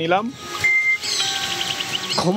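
Birds chirping and calling, with one short whistled note and then quick repeated chirps, after a man's voice breaks off at the start.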